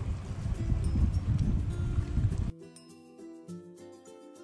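Wind buffeting the microphone with faint music underneath; about two and a half seconds in the wind noise cuts off suddenly, leaving only quiet background music.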